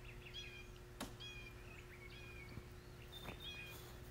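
Faint birds chirping outdoors in short repeated calls, over a quiet background, with one sharp click about a second in.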